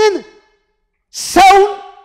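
A man's voice through a microphone: a drawn-out vocal sound trails off, and after a pause of about a second comes a loud, breathy exclamation.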